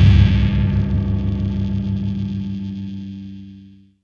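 Final distorted electric guitar chord of a pitched-up melodic death metal/metalcore song ringing out after the band stops, slowly fading away to silence near the end.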